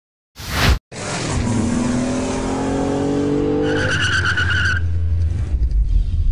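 Sound effect under the opening title cards: a brief sharp burst of noise, then a steady rumble carrying slowly rising tones, with a high screech from about three and a half to nearly five seconds in.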